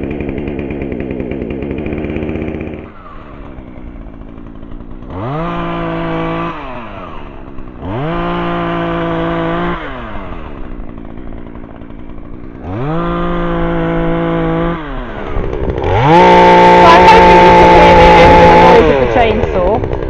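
Hyundai two-stroke petrol chainsaw running just after starting, dropping to idle, then revved up and back down three times. Near the end it is held at full throttle, at its loudest and harshest, as it cuts into a fallen oak branch.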